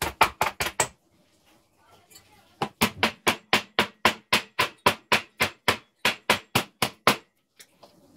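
Hammer striking the metal frame of a sliding window in rapid, evenly spaced blows: a short run in the first second, then after a pause a steady run of about five blows a second until about a second before the end, to knock the frame loose.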